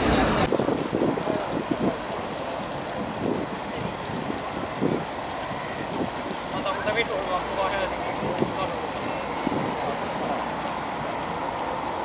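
Steady outdoor street noise of traffic and wind, with faint distant voices, after a brief burst of indoor chatter that cuts off half a second in.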